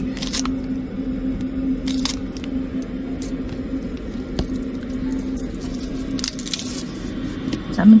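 Kitchen scissors snipping scallion and garlic, a few sharp clicks in the first seconds and one more later, over a steady low hum.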